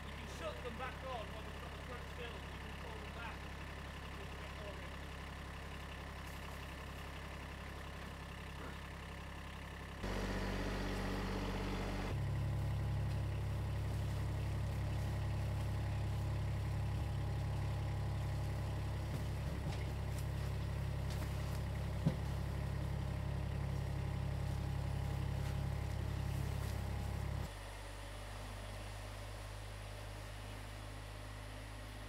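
A diesel engine idling steadily. It abruptly gets louder about ten to twelve seconds in and drops back near the end, with a single sharp knock about two-thirds of the way through.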